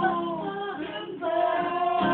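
Voices singing long held notes over an acoustic guitar, with a short dip about a second in before the singing swells again.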